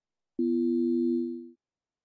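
Single ring-modulated synth note from iZotope BreakTweaker's dual-wavetable synth generator: two steady pitches sounding together, a metallic-type tone of about a second that fades out.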